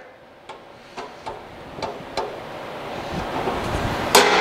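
Handling noises as leftover ground meat is pulled out of the outlet of a stainless steel vertical sausage stuffer: a few faint clicks in the first half, then a soft rustling noise that grows louder toward the end.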